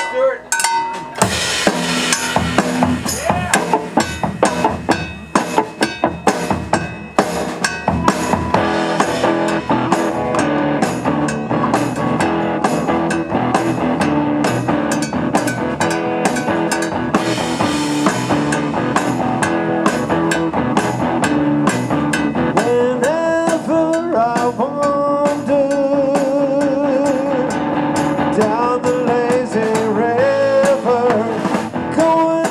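Live rock band playing a song's instrumental intro: a drum kit kicks in about a second in with a steady beat, under electric guitar.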